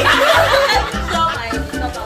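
Laughter over background music with a steady beat; the laughing is loudest in the first second.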